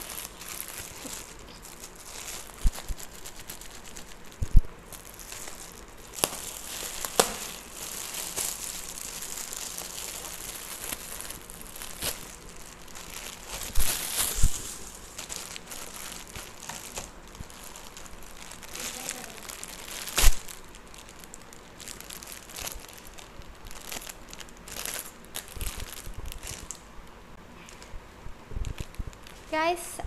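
Crinkly plastic gift wrapping and a plastic mailer bag rustling and crackling as they are handled and opened by hand, with a few sharp, louder crackles, the strongest about 14 and 20 seconds in.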